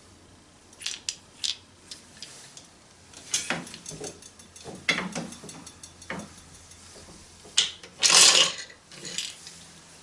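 Wooden handloom clacking and knocking as the weaver readies the shuttle and starts plain weaving: a string of irregular clicks and knocks, with a louder, longer noisy burst about eight seconds in.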